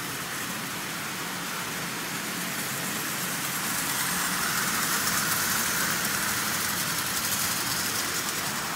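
Motorised Marx 10005 tin toy locomotive running on three-rail track, pulling a long train of tin lithographed cars. The motor hums and the tin wheels rattle, getting louder over the first few seconds as the train passes close by.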